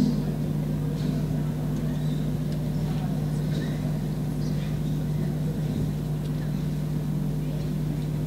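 A steady low hum, with faint, indistinct voices or movement now and then.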